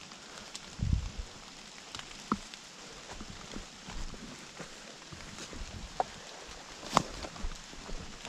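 Footsteps of a hiker walking on a path covered in fallen leaves: irregular soft steps with a low thump about a second in and a few sharp clicks and knocks, the loudest about seven seconds in.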